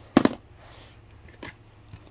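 Plastic Blu-ray cases clicking and knocking against each other as they are handled and swapped: a quick double click soon after the start, then a faint tap later.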